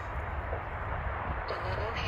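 Steady low rumble of wind on the microphone, with faint voices in the second half.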